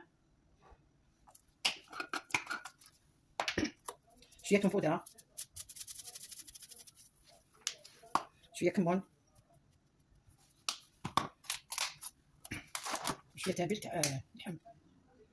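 Spices being shaken from small jars onto raw ground meat in a glass bowl: light clicks and taps, with a rapid rasping rattle for about two seconds in the middle.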